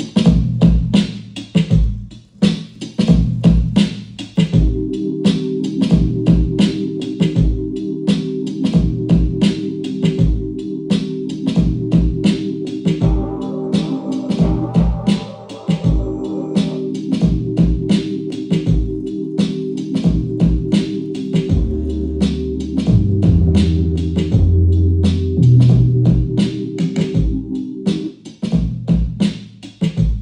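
A beat playing back from an Akai MPC 60 sampler. A steady drum loop runs throughout, and a sustained chord sample comes in about four seconds in and stops near the end. A higher layer sounds briefly in the middle, and bass notes come in during the last third.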